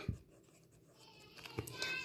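Two short clicks at the start, then quiet, then a faint rustle and a click near the end: a pencil moving against a textbook's paper page.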